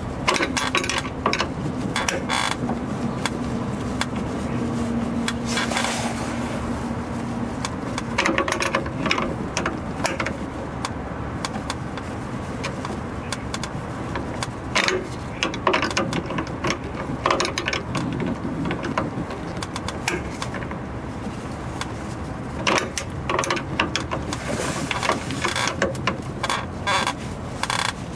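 Irregular metallic clicks and scrapes of a wrench working the brake line fitting at the rear junction of a 2006 Nissan Xterra, coming in clusters over a steady low hum.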